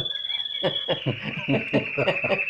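Laughter in short, rapid pulses, over a thin, steady high-pitched tone that drops slightly in pitch about a second in.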